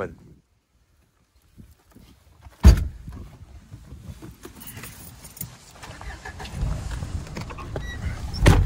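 A car door shuts with a single loud thud about two and a half seconds in, then the car's engine and road rumble run steadily, heard from inside the cabin as it drives off, growing a little louder near the end.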